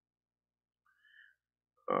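Near silence, broken by a brief faint rising tone about a second in; a man's voice starts right at the end.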